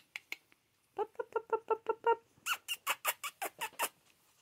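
Scottish terrier puppies, about three and a half weeks old, squeaking. A quick run of about eight short, lower-pitched squeaks comes a second in, then a run of higher, sharper squeals.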